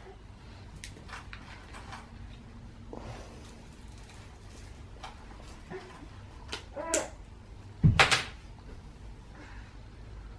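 Small handling clicks and taps over a quiet room background, a domestic cat's short meow about seven seconds in, and a sharp knock about a second later, the loudest sound here.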